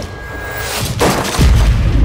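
A sudden crash about a second in, followed by a deep, heavy boom that carries on: a trailer impact hit as a body plunges underwater.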